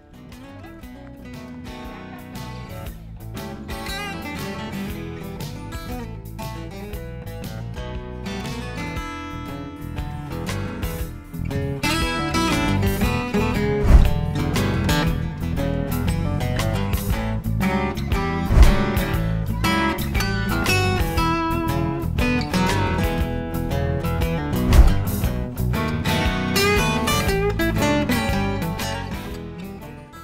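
Background music led by strummed acoustic guitar, starting soft and building up over the first ten seconds or so. A few deep hits stand out in the middle, and the music fades away near the end.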